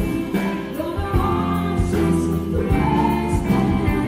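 Live country-Americana band playing: a female lead vocal over strummed acoustic guitar, electric guitar, bass and drums, with a steady beat.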